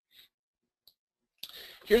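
Two faint short clicks in near silence, then an intake of breath and the start of a man's speech near the end.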